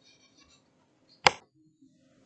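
A single sharp click a little past a second in; otherwise only faint sound.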